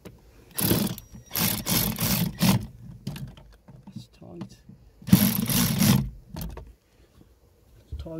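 Sealey cordless ratchet wrench running in three bursts: a short one, a longer pulsing run, then another about five seconds in. It is driving the mounting nuts of an accelerator pedal box tight.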